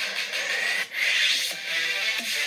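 Music track with a harsh, rasping noise sweep laid over it; the sound drops out briefly just before a second in, then returns at full strength.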